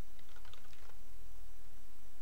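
Computer keyboard keys typed in a quick run of several strokes in the first second, over a steady low hum.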